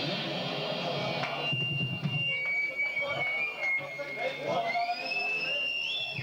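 A band playing stops about a second in, and sustained high-pitched amplifier feedback whines take over, holding steady and then gliding upward near the end.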